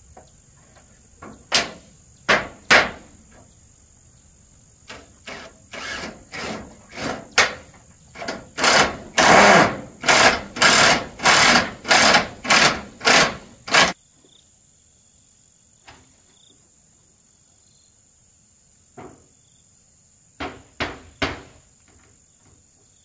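Work on a corrugated metal roof as the ridge cap is fixed down: scattered sharp knocks, then about a dozen evenly spaced strokes, roughly two a second, that stop abruptly about two-thirds of the way through, with three more quick knocks near the end. Insects keep up a steady high buzz underneath.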